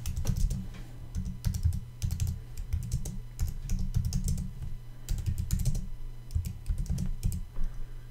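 Typing on a computer keyboard in short runs of keystrokes with brief pauses between words, over a steady low hum.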